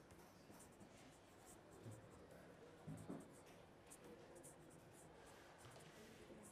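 Faint scratching of a pen writing on paper, in short strokes one after another, with a soft low bump about three seconds in.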